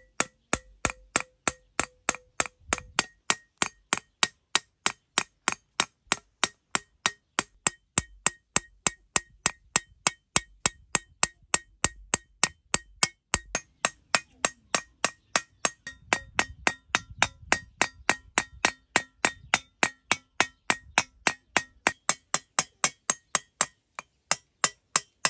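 Hammer peening the edge of a steel scythe blade on a small steel peening anvil: steady metallic strikes, about three a second, each with a short bright ring. The cold hammering thins the edge for sharpening.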